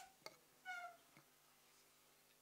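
A cat meowing once, a short high call just under a second in, with a faint click before it, over quiet room tone.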